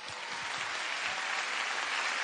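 Studio audience applauding, the clapping swelling at the start and then holding steady.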